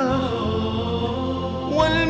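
Arabic religious song (nasheed) being sung: a voice holds a long, gently wavering note over a steady low accompaniment, and a new sung phrase begins near the end.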